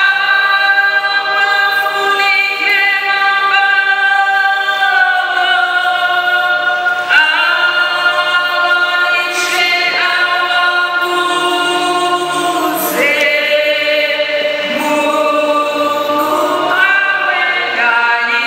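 A choir singing a slow hymn in long held notes, the voices moving together to a new chord every few seconds.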